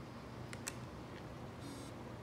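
Two light clicks about half a second in, as small carb caps are set on top of electronic dab rigs, with a faint low hum underneath.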